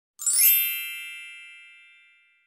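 A single bright, bell-like chime with many high overtones, sounding about a quarter second in and ringing away slowly over about two seconds: an intro sound effect under the opening title card.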